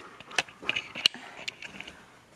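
Handling noise from a handheld camera being turned around: a few light clicks and knocks, the two sharpest about half a second and a second in, over faint room hiss.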